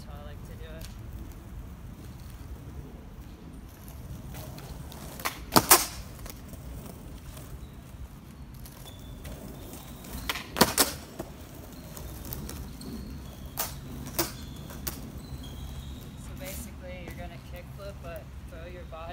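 Skateboard tricks on concrete: the tail popping and the board landing make two loud sets of sharp clacks, about five and a half and ten and a half seconds in, with lighter clicks a few seconds later. Under them runs the steady rumble of the wheels rolling on concrete.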